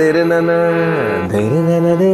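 A man singing a long held note in a Bengali song, with harmonium accompaniment. About a second in, his voice slides down in pitch and comes back up.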